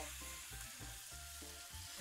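Pieces of cooked fish sizzling quietly in a hot grill pan as they are turned and broken up with metal tongs.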